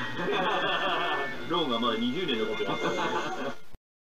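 A man laughing and talking over steady background music, the sound cutting off abruptly just before the end.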